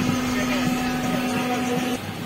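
Steady hum inside a crowded passenger train coach, with passengers' voices mixed in; the hum cuts off suddenly at the end.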